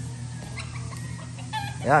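Gamefowl chickens clucking.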